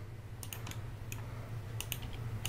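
A few faint, scattered clicks from a computer keyboard and mouse, over a low steady hum.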